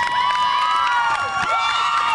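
Audience cheering and screaming after a band's set ends, many high-pitched voices overlapping, with long held screams.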